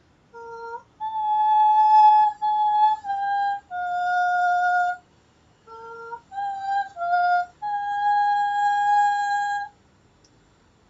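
A woman's wordless sound-healing vocal toning: a string of clear, high held notes, the longest in the second half, broken by short lower notes that jump sharply upward. There is a pause about halfway through and another at the end.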